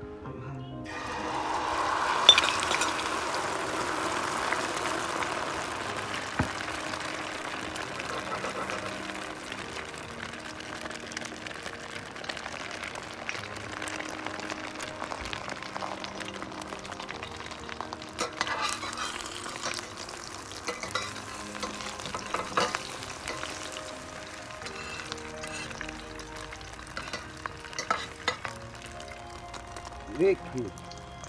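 Beaten egg and sea urchin mixture poured into hot oil in a stainless steel pan, sizzling loudly as it hits about a second in, then settling to a steady, quieter frying hiss. A few sharp clicks come in the second half.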